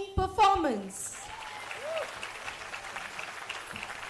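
Applause from many hands clapping, starting about a second in after a brief voice, then continuing steadily.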